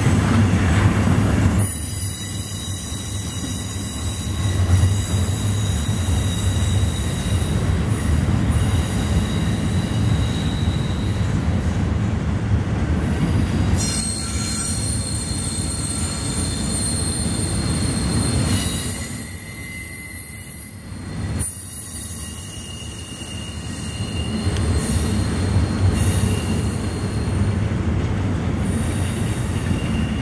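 Double-stack intermodal container train rolling past, its well cars' wheels giving a steady low rumble on the rails. High-pitched wheel squeal comes and goes over it, easing for a few seconds past the middle.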